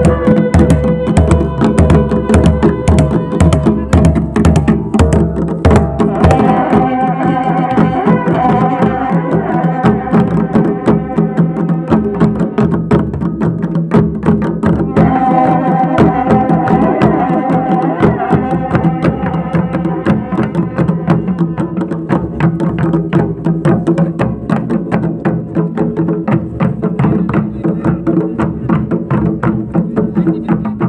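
Brass-shelled dhol drums beating a fast, steady rhythm, with long brass horns blowing held notes over them. The horns are loudest from about six to nine seconds in and again from about fifteen to nineteen seconds in.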